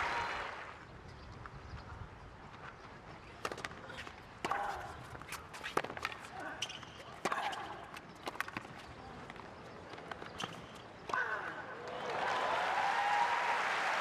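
A tennis rally on a hard court: racquets strike the ball about every one to one and a half seconds. Applause dies away at the start, and near the end the crowd reacts with an "ooh" and rising applause.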